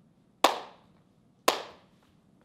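Slow hand claps from one person, two claps about a second apart, each with a short echo in the room.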